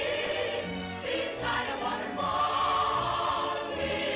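Choir singing with musical accompaniment from an old film musical's soundtrack, a bright high note held through the middle.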